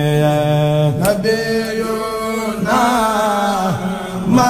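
Male voices chanting a xassida, a Senegalese Sufi devotional poem. Long held notes alternate with lines that wind up and down, with a short break about a second in.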